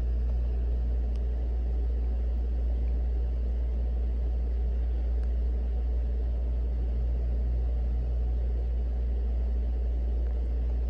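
Steady low rumble, an unchanging background hum with no other sound over it.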